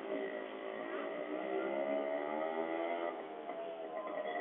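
A motor engine running steadily, its pitch drifting slightly up and down, fading out a little after three seconds in.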